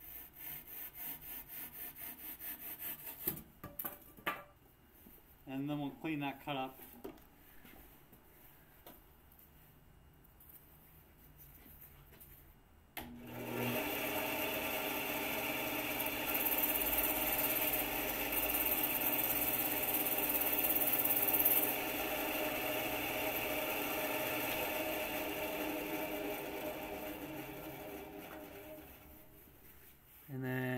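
Hand pull saw cutting frame-tube stock in quick rhythmic back-and-forth strokes for a few seconds. Later a loud, steady power-tool motor starts abruptly, runs for about fifteen seconds and winds down near the end.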